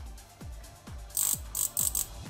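Background electronic music with a steady kick beat. From about a second in come three short bursts of rapid buzzing clatter, fitting the circuit's 5 V relay chattering: the transistor stage is oscillating while its base is touched.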